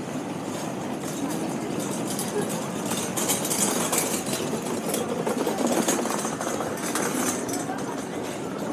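Busy pedestrian street: people's voices, with the rumble and rattle of suitcase wheels and a hand cart rolling over brick paving, loudest around the middle.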